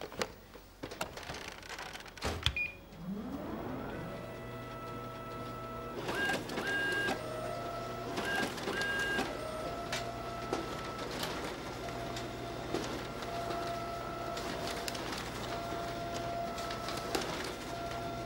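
Office photocopier starting up: a few sharp clicks, then a motor whir rising in pitch about three seconds in and settling into a steady mechanical run, with short electronic beeps between about six and nine seconds.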